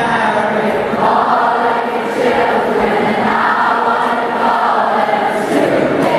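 A large concert crowd singing along together, many voices at once, with the acoustic guitar no longer playing.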